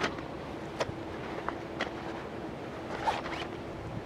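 Camping gear being handled and pulled out of a nylon bag: fabric rustling with a few light clicks and a short swish about three seconds in.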